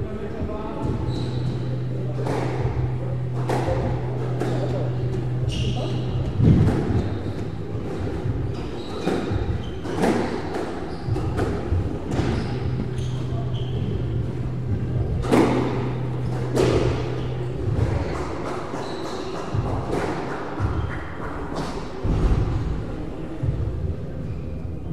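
Squash rally: the ball knocking off rackets and the court walls in an irregular run of sharp impacts, echoing in the court.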